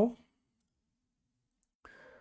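A voice finishing a spoken word, then near silence, with a faint short noise near the end.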